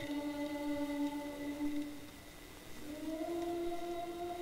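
Voices singing a slow worship song in long held notes; the melody dips in loudness and glides up to a new held note about three seconds in.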